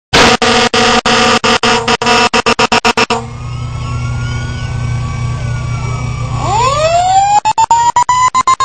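Fire engine passing: a steady air horn blast for about three seconds, then the truck's diesel engine rumbling, with a siren winding up in pitch near the end. The sound cuts out in many brief gaps throughout.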